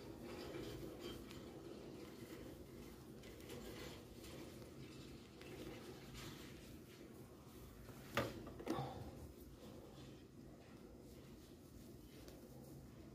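Faint rustling and handling of chunky t-shirt yarn as a crochet hook works a crab-stitch edging on a coaster. Two brief clicks or knocks come a little after eight seconds, about half a second apart.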